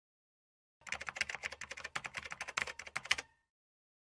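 A rapid run of light clicks like typing on a computer keyboard, starting about a second in and lasting about two and a half seconds, then stopping.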